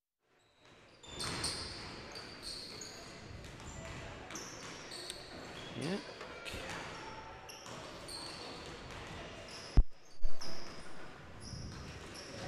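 Basketballs bouncing on a hardwood gym floor and sneakers squeaking during a warm-up in a large hall, with players' voices calling out. The sound begins about a second in, and two loud thumps come just before and after the ten-second mark.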